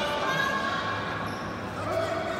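Indistinct voices echoing in a large sports hall, over a steady low hum.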